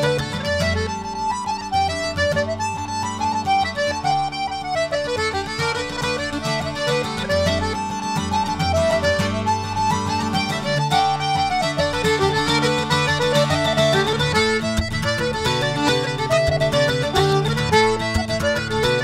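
Recorded instrumental Scottish traditional tune: fiddle and accordion play a quick, running melody over a steady chordal accompaniment.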